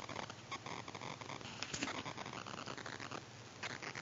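Faint handling noise from a coated-canvas and leather handbag held and shifted close to the microphone: soft rustling with many small scratchy ticks.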